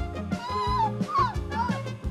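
A man laughing hard in high-pitched, wheezing bursts that rise and fall in pitch, over background music.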